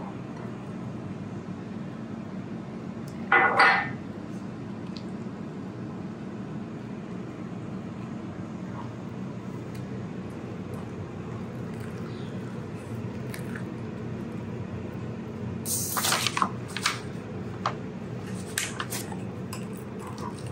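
Wooden spoon stirring thick, wet waffle batter in a glass bowl, soft and squishy, over a steady low hum. A short loud pitched sound comes about three and a half seconds in, and near the end the spoon gives a run of sharp knocks and scrapes against the bowl.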